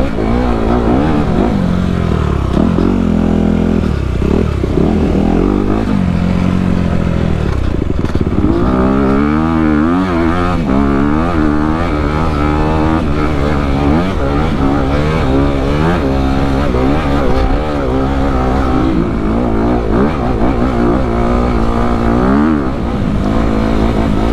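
Dirt bike engine under hard riding, its pitch rising and falling over and over as the throttle is worked over rough trail, heard from the rider's helmet camera.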